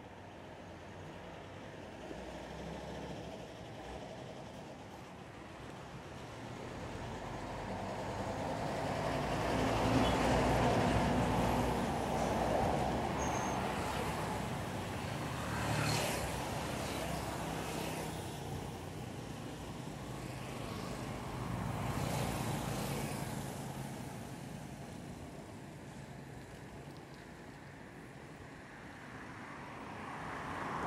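Road traffic going by on a street: motor vehicles pass one after another, the sound swelling and fading, loudest about ten seconds in, with further passes around sixteen and twenty-two seconds.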